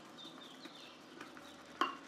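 Lathering bowl clinking once, sharply and with a short ring, near the end as it is handled during lathering, after a few faint high squeaks.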